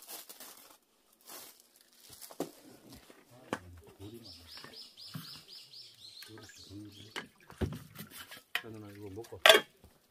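A small bird calls a quick run of about eight high, evenly spaced notes a few seconds in, over faint talk and scattered clinks of dishes and utensils being handled. A sharp loud knock comes near the end.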